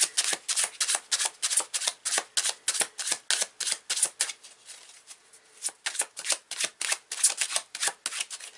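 A deck of cards being shuffled by hand: a quick run of crisp card flicks, about five a second, that thins out about five seconds in and then starts up again.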